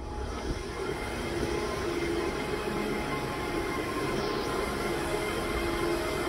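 Cooling equipment of a cell-site equipment shelter running: a steady whooshing mechanical hum with a few held tones, picking up at the start and then holding even.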